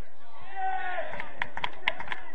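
A man's voice calling out across a football pitch, then a run of sharp hand claps, about four a second.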